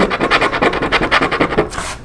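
A coin scraping the latex coating off a scratch-off lottery ticket in quick, repeated short strokes.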